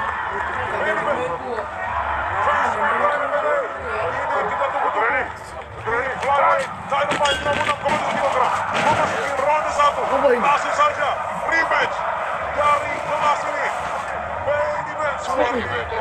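Men's voices talking over the noise of an arena crowd, with several sharp knocks or claps in the middle.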